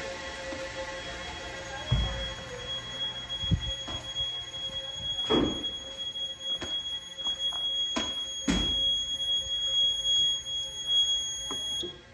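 Fire alarm system sounding a steady high electronic tone over a lower hum, with several knocks along the way. The tone cuts off suddenly near the end as the signals are silenced at the fire alarm panel.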